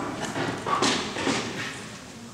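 A few sharp knocks, the loudest a little under a second in, ringing out in a large, echoing hall.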